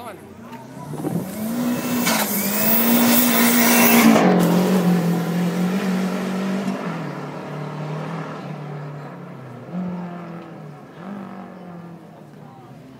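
A car accelerating hard and pulling away: the engine note climbs and is loudest about two to four seconds in with a rush of noise, then drops in steps as it shifts up and fades into the distance.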